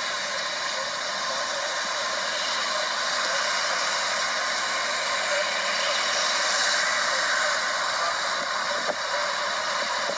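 Steady rushing noise from a vehicle with its engine running, played back through a phone's small, tinny speaker with no bass; a couple of faint sharp clicks near the end.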